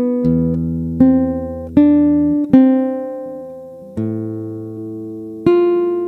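Nylon-string classical guitar played fingerstyle in a slow single-line study: one plucked note at a time, each left to ring, with melody notes on the second string alternating with low bass notes. Some notes are held longer than others.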